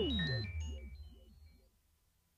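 Minimal electronic synthesizer music fading out: a low drone under a repeating rising-and-falling synth figure and scattered high blips, with a downward pitch sweep ending just after the start. The whole texture dies away to silence about three-quarters of the way through.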